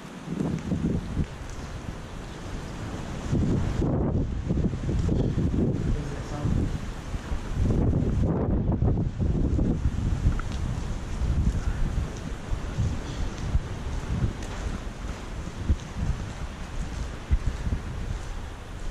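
Wind buffeting the camera's microphone in gusts, a low rumble that rises and falls throughout, heaviest from about three seconds in.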